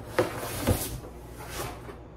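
Kitchen things being handled in a cardboard moving box during unpacking: two knocks about half a second apart, then rustling.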